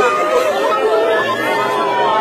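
Crowd of many voices talking and exclaiming over one another at once, no single voice standing out.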